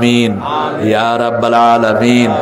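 A man chanting in held, drawn-out melodic phrases into microphones, one voice with clear pitch sliding gently up and down.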